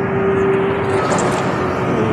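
Steady running noise of a moving transit vehicle heard from inside the cabin, with a steady hum that fades out about a second in.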